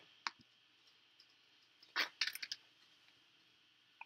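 A few light clicks from jumper wires being picked up and handled: a faint one just after the start, then a louder click about halfway through followed by a quick run of smaller ones.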